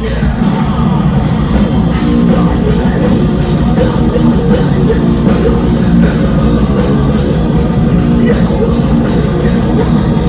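A metalcore band playing live: distorted electric guitars and a drum kit pounding through an instrumental passage, loud and unbroken, with no vocals.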